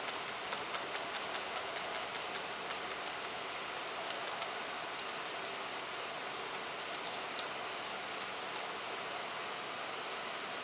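Steady background hiss with faint ticks, a few a second at first, thinning out after a few seconds.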